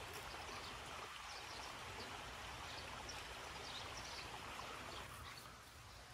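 Steady outdoor background hiss with small birds chirping faintly here and there.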